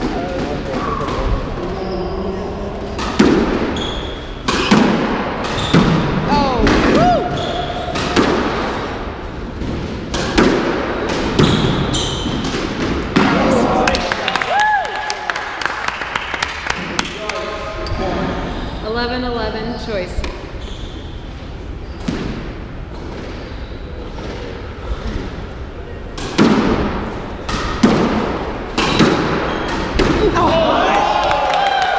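Squash rally: a hard rubber ball smacks against the racket strings and the court walls over and over, echoing in the enclosed court, with the players' shoes squeaking on the hardwood floor. The hits thin out in a pause between points midway through, then pick up again near the end.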